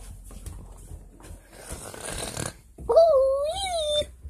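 A domestic cat meows once near the end, a drawn-out call of about a second that rises, dips and rises again. Before it there is rustling handling noise.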